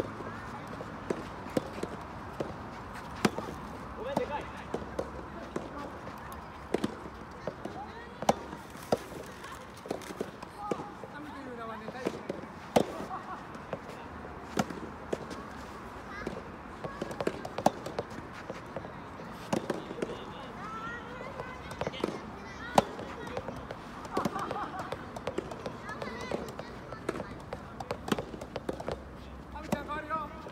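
Soft tennis rally: sharp pops of soft rubber balls struck by rackets and bouncing on the court, coming at irregular intervals every second or two.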